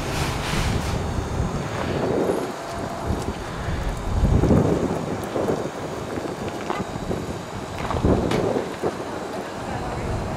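Wind buffeting the microphone outdoors: an uneven low rumble that swells in gusts about two, four and a half, and eight seconds in.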